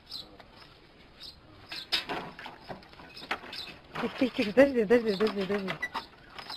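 Scattered knocks and clatters, then from about four seconds in a person's voice calling out in a drawn-out, falling tone.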